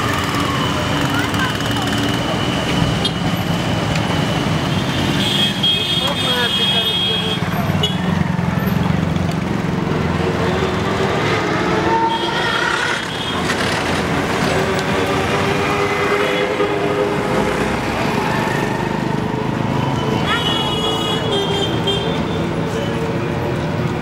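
Street traffic with vehicle horns tooting several times, and people talking.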